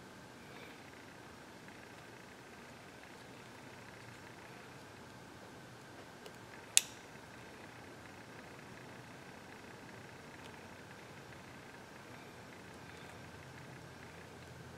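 Faint steady room hiss while new pins are fitted into a Kwikset lock plug with tweezers, with one sharp click about seven seconds in as the small parts tap against the metal plug.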